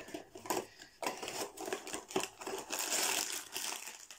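Foil mystery-figure bag crinkling and rustling in irregular crackles as it is pulled from its small cardboard box and handled.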